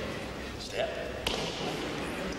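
A short vocal sound a little under a second in, then a single sharp thud about a second and a quarter in, as a high kick is thrown in a large echoing hall.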